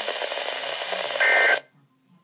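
Midland WR-120 NOAA weather radio's speaker hissing with static, then a short, louder burst of buzzy digital data tones, the start of the end-of-message signal, about a second in. The audio then cuts off abruptly as the radio recognises the end-of-message signal and mutes.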